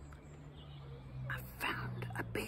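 A woman whispering, starting about a second in, over a steady low hum. A faint, short high whine comes just before the whisper.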